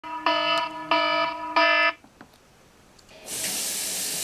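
Smartphone alarm ringing: three loud repeated chime bursts in the first two seconds, then it stops. About a second later a steady hiss begins.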